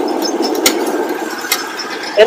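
Steady rushing of wind and road noise from a slowly moving motorcycle, with a couple of light knocks.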